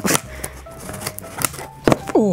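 Scissors cutting through the packing tape on a cardboard box: a few sharp snips and scrapes, the loudest near the end.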